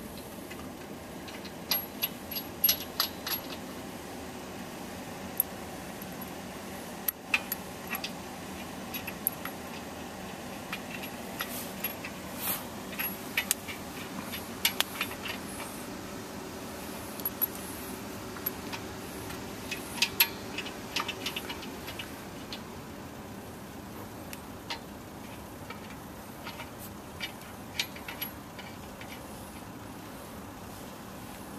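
Lug nuts and a wheel nut wrench clinking and rattling as the nuts are tightened on a spare wheel, in irregular clusters of sharp metal clicks over a steady background hum.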